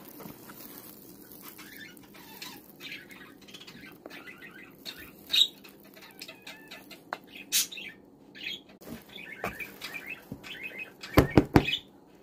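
Sticky raisin-studded sweet yeast dough squishing and flapping as hands knead it and stretch it up out of a plastic bowl, in irregular wet smacks, with a few louder slaps near the end.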